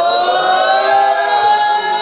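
A woman's voice over a microphone holding one long sung 'ooh' that slides slowly upward in pitch, building suspense before the overall winner is announced.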